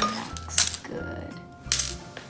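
Background music, over sharp clicks of Reese's Pieces candies against a ceramic plate as a chocolate-dipped banana is rolled through them: one about half a second in, and a louder cluster near the end.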